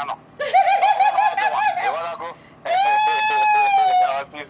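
A woman's high-pitched wordless vocalising, rapidly fluttering for about two seconds, then one long drawn-out note that sinks slightly at the end.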